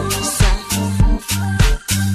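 Kwaito dance music with a steady, bass-heavy beat at a little over two beats a second.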